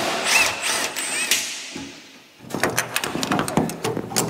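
Wire and a fish tape scraping and rustling as they are fed through a hole in a trailer's front bulkhead, with a few short squeaks in the first second. About halfway through comes a quick run of clicks and rattles.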